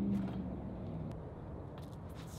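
A low, steady engine hum from a vehicle fades out in the first half second. After it there is only quiet outdoor background with a few faint ticks.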